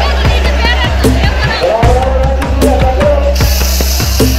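A song with a singer's wavering voice over a steady drum beat and a heavy bass. A bright hiss joins in near the end.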